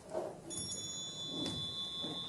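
A high, bell-like ring starts about half a second in and rings on, its several tones fading out one by one. A short knock comes about a second and a half in.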